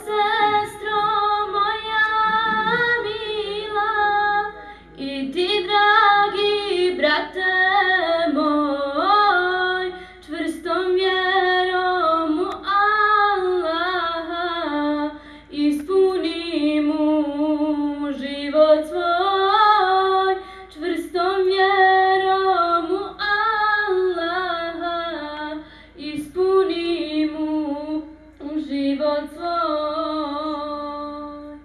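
A woman's voice singing an Islamic devotional chant solo and unaccompanied, in long ornamented phrases with short pauses for breath.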